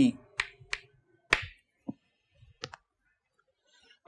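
Chalk striking and stroking a blackboard as a letter is written: about five sharp, separate clicks over the first three seconds.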